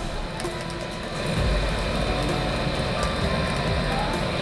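Handheld gas cooking torch burning steadily as it sears chicken thigh, a steady rushing hiss whose low rumble grows louder about a second and a half in, with background music underneath.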